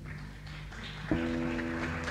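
A live electric band starts playing: about a second in, a single note is struck and held steady, ringing on over a low amplifier hum. It is the opening of the song's introduction.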